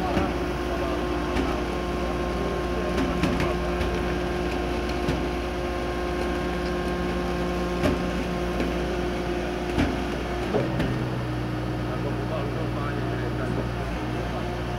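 DESEC TL 70 track-laying machine running steadily as it moves along on its crawlers, its engine note dropping lower about ten and a half seconds in. A few short knocks sound over it.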